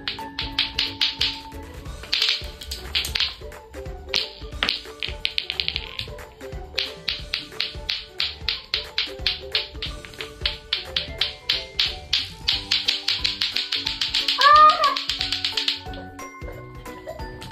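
Lato-lato clackers: two plastic balls on a string knocking together in fast runs of sharp clacks, several a second, with brief breaks between runs, over background music.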